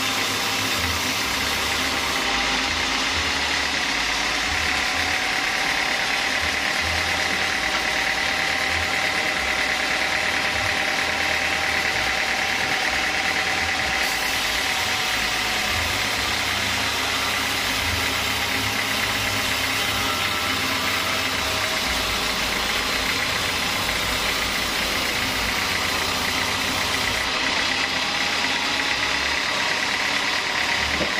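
Horizontal band sawmill sawing lengthwise through a log: the band blade cuts steadily through the wood over the machine's running, with a steady high whine that holds throughout.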